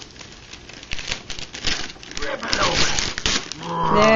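Wrapping paper being torn and crinkled off a gift box: a run of quick crackling rips from about a second in, with a voice starting just before the end.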